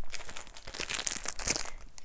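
Clear plastic packaging of an emergency poncho crinkling as it is handled, a quick run of small crackles.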